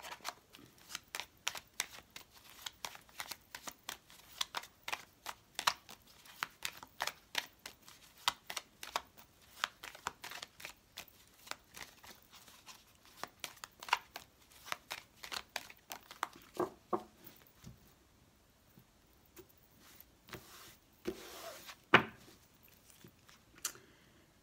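A deck of baralho cigano fortune-telling cards being shuffled by hand, overhand, a quick irregular run of soft card slaps and flicks for about seventeen seconds. After a short lull come a few louder knocks near the end, one of them a single sharp tap.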